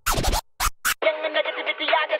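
DJ scratch effects: one longer scratch and two short ones in the first second, as the full song cuts off. About a second in, a thin, tinny clip of music with no bass starts, like sound through a small radio.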